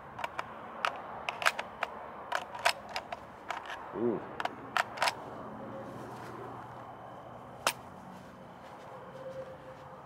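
Steel WASR-3 .223 magazine being rocked and pushed into the magazine well of a Zastava M90 AK-pattern rifle: a string of short, sharp metallic clicks and knocks in the first half, then one more click later on. The magazine fits tightly and the lock engages only very lightly, with no clear click of the catch.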